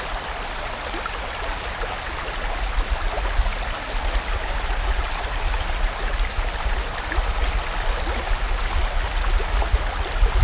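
Mountain stream rushing over rocks, a steady full water noise flecked with small splashes and gurgles, over a low rumble. It grows a little louder after the first few seconds.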